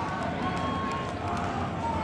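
A ring announcer's voice stretching out a fighter's name in long held notes, echoing in a large hall over a steady crowd din.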